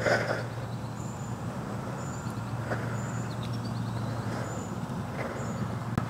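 Steady outdoor background noise: a constant low hum like distant traffic, with faint high chirps about once a second. A short noisy burst comes right at the start.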